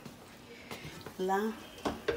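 Mostly quiet kitchen with one spoken word, then a couple of light knocks near the end as a large aluminium wok is handled on the stove.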